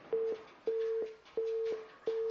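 Telephone busy tone on the broadcast phone line: three beeps at one steady pitch, on and off about every half-second. It is the sign that the caller's call has dropped.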